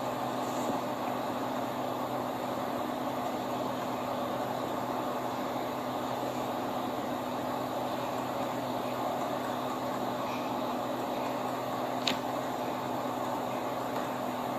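Steady hum of a car idling, heard inside the cabin along with a fan-like hiss. A single sharp click comes about twelve seconds in.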